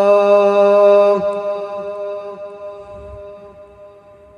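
A muezzin's solo voice holds the last long note of the adhan, sung in maqam Hijaz through the mosque's loudspeakers. The voice stops a little over a second in, and the note fades slowly in the hall's reverberation.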